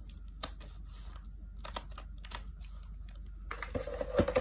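Clear plastic snack bag being handled and cut open with scissors: a handful of separate sharp clicks with faint crinkling in between.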